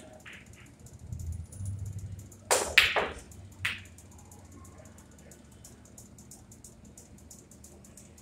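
Pool shot: the cue strikes the cue ball and the balls clack together on the table, with two sharp clacks close together about two and a half seconds in and a single clack about a second later.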